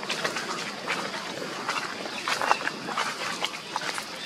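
Long-tailed macaques making short, scattered squeaks and calls over rustling and scuffling in dry leaf litter, the loudest call about two and a half seconds in.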